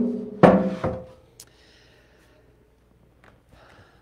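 A large sheet-metal box being moved and set down on a bench: hollow metal thunks that ring with a short musical tone, the loudest about half a second in, dying away within about a second, then one small click.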